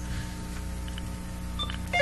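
Steady low electrical hum on the line, with short electronic beeps near the end as a phone caller is put through to the broadcast.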